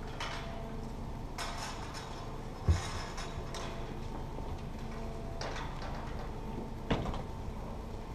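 Narrowboat's diesel engine ticking over with a steady low hum, with two sharp knocks, one about three seconds in and the other near the end, as the boat comes to a stop and is roped up.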